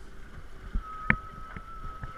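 Catamaran out on the water: low water and wind noise with a few sharp knocks, the loudest about a second in, and a faint steady high tone that starts a little under a second in.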